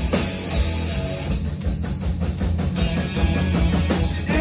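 Live rock band playing an instrumental passage with no singing: electric guitar and drums over a heavy low end, with steady drum hits.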